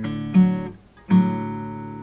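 Acoustic guitar playing a major chord shape made of root, major third and the fifth on the neighbouring string, plucked twice about three-quarters of a second apart. The second chord is left ringing.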